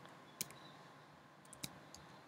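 Computer keyboard keys clicking as a command is typed: a few faint keystrokes, one about half a second in and three close together near the end.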